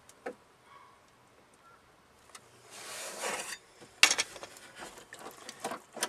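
Small metal clicks and a scraping rub as a nut and bolt are worked into a pickup's inside door handle mechanism, with a sharp click about four seconds in and scattered lighter clicks after it.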